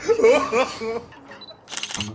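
Camera shutter click near the end, just after a brief faint high beep, as a still photo is taken.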